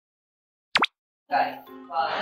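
A single short cartoon-style pop sound effect, swooping sharply in pitch and over in a fraction of a second, under a second in. Talking over background music begins just after.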